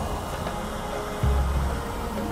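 Film soundtrack: music under a steady rushing roar of sound effects, with a deep rumble that swells up about a second in.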